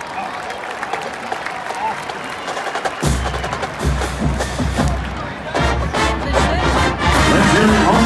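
Stadium crowd noise, then about three seconds in a marching band's drums and music start loudly over the crowd, with cheering.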